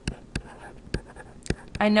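A stylus writing on a tablet: a few sharp taps of the tip against the surface and faint scratching as figures are written out.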